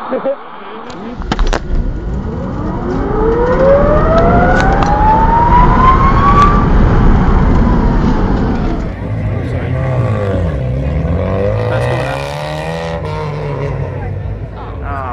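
Eliica electric car accelerating: a high electric-motor whine rises steadily in pitch for about four seconds over road rumble, then stops. Afterwards a lower whine dips and climbs again, and voices come in near the end.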